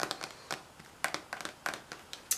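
A plastic lotion bottle being handled with long fingernails: a run of light, irregular clicks and taps, about ten in two seconds.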